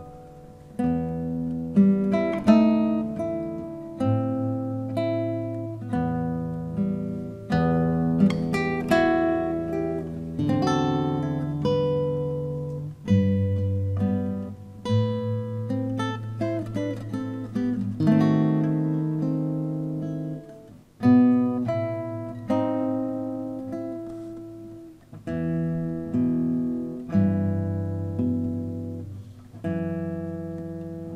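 Solo acoustic guitar played fingerstyle: an instrumental piece of plucked notes and ringing chords, with a quick run of notes about halfway through.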